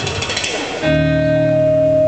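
A held chord from an amplified instrument starts about a second in, stays level without fading, and stops abruptly.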